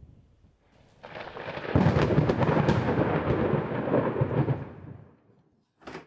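A deep rolling rumble with crackle, swelling in about a second in, loudest through the middle and dying away near the end, followed by a brief burst of noise just before the end.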